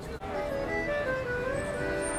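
A street musician's accordion playing a melody of held notes over chords, with street traffic behind.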